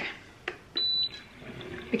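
Smeg electric milk frother giving one short, high-pitched beep as it is started on a frothing cycle, just before the middle, with a small click a moment before.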